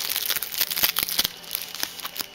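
Packaging crinkling and rustling as it is handled close to the microphone, a dense run of small crackles and ticks.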